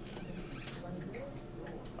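Faint classroom background: distant voices murmuring, with a few light rustles.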